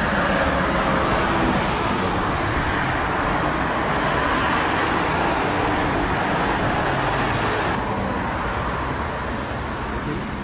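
Steady road traffic noise, with vehicles running close by, easing off slightly near the end.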